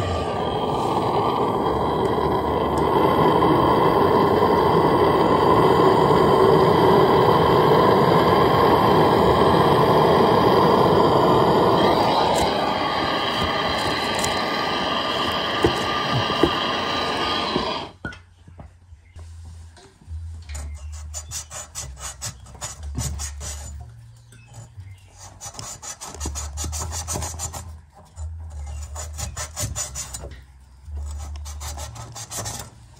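A loud, steady rushing noise that cuts off suddenly about two-thirds of the way through, followed by quick, uneven rubbing strokes of abrasive cloth being worked around copper water pipe.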